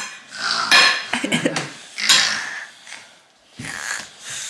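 A toddler imitating a sleeping person's snoring: a few short, rough, rasping breaths with a rattling buzz in some, spread out over a few seconds.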